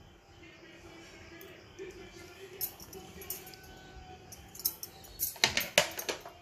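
Mostly quiet kitchen sound, then, a little over five seconds in, a quick run of sharp metallic clinks from steel kitchen utensils.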